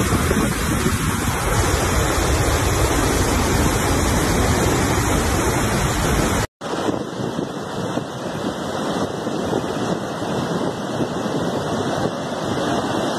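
Iguazu Falls: a steady, loud rush of heavy falling water, with wind noise on the microphone. About six and a half seconds in the sound cuts out for a moment and comes back as a thinner rush with less low rumble.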